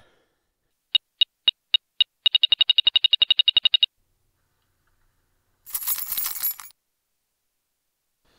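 Metal detector beeping: five single beeps about a quarter second apart, then a fast run of beeps for about a second and a half, the signal of metal under the coil. About six seconds in comes a second of crunching as snow is dug by hand.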